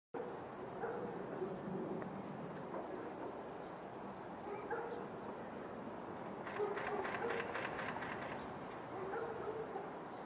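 Faint, short animal calls recurring every second or two, with a brief run of faint clicks about two-thirds of the way through.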